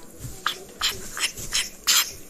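Cartoon eating sound effect: five quick noisy mouth sounds about 0.4 s apart, the last one near the end the loudest.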